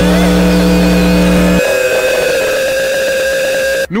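Electronic noise texture from a breakcore mix: a dense wash of noise with several held tones, and a deep bass tone that cuts off about a second and a half in.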